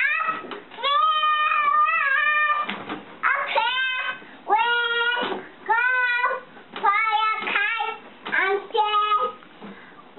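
A young girl singing a song in a series of short sung phrases, many of the notes sliding upward as they begin.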